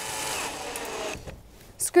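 Cordless drill driving a self-tapping sheet metal screw through a galvanized steel end cap into the duct pipe. The motor whine drops in pitch as the screw bites and seats, then stops about a second in.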